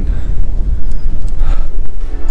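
Wind buffeting a handheld camera's external microphone on a moving bicycle: a loud, low, rumbling roar.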